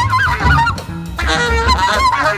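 Live jazz trio: a saxophone plays wavering, bending phrases over upright bass and drums. The saxophone drops out for a moment about a second in, then comes back.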